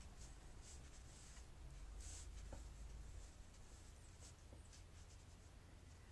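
Faint soft swishes of a watercolor brush stroking wet paint over sketchbook paper, several short strokes with the clearest about two seconds in, over a low steady room hum.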